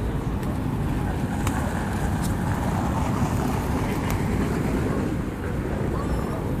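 Wind buffeting the microphone in a steady low rumble, with a few brief sharp wing flaps from feral pigeons crowding close by.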